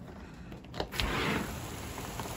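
A window sliding open about a second in, with a short click and rub. The steady hiss of a heavy rain downpour then comes in louder through the opening.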